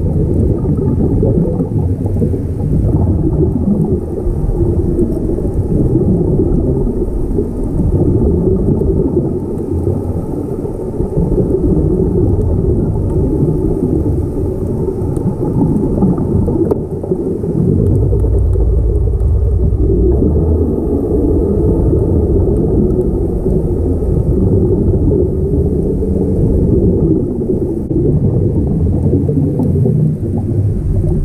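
Underwater noise picked up by an action camera in its waterproof housing: a steady, muffled low rumble of water and bubbles. It swells for a couple of seconds past the middle.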